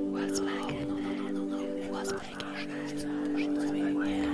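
Ambient meditation music: a steady drone of several held low tones, one of which drops out about halfway through, with soft whispering voices laid over it, their hissing sounds recurring every second or so.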